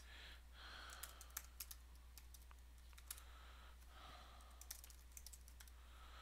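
Faint typing on a computer keyboard: scattered keystrokes in short runs, over a steady low hum.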